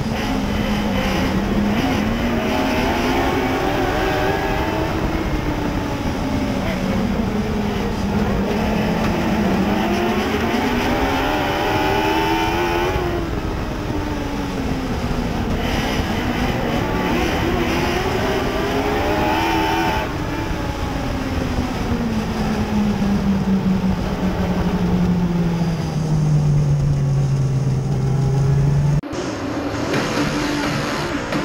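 Mod Lite dirt-track race car's engine heard from inside the cockpit, revs climbing and falling in long cycles of about seven or eight seconds as the car drives the straights and turns. Near the end the revs drop and hold low as the car slows, then the sound cuts off suddenly.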